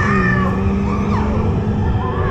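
Dark-ride show audio, music with pitched effects, over the steady low rumble of the moving Radiator Springs Racers ride vehicle.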